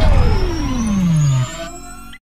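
Synthesized sci-fi intro sound effect: a single tone sweeping steadily downward in pitch over a deep rumble, cutting off about a second and a half in, with a faint high tone slowly rising alongside it.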